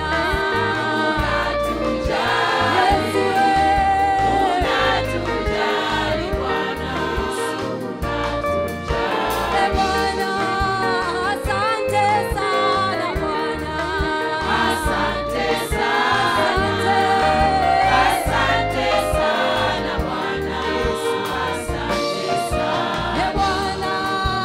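Live gospel worship song: a woman singing lead into a microphone, backed by a choir and an electric bass guitar, continuous and steady in loudness.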